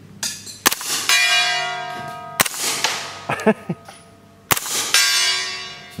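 Several suppressed 9mm shots from a Heckler & Koch MP5A3 fired semi-automatic through a Silencerco Octane 9 HD suppressor. The shots themselves are quiet. Twice, about a second in and again near the end, a steel gong is hit and rings out with a long, fading, many-toned ring.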